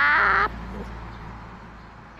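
A high-pitched voice finishes a short spoken Thai phrase ("...ครับ") in the first half second, then only faint background noise remains, slowly fading.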